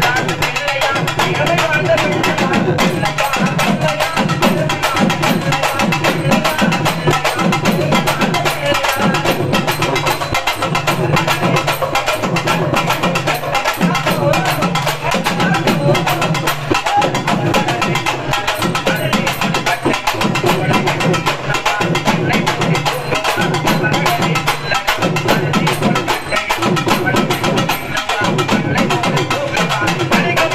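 Urumi melam drum ensemble playing: urumi drums and other stick-beaten drums in a fast, dense rhythm. A low drum tone slides up and down in pitch over and over.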